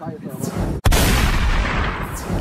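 Loud edited-in boom sound effect: a rushing noise starts about half a second in, breaks off for an instant, then a loud blast follows and slowly dies away. A moment of laughter comes before it.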